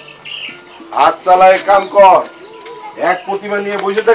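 Crickets chirping steadily in a high, even line. A person's voice speaks loudly over them, about a second in and again near the end.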